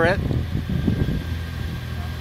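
A Mitsubishi car creeping slowly in reverse, a steady low rumble of engine and tyres on asphalt, as its wheel rolls over a phone in a protective case. There is no crunch or crack.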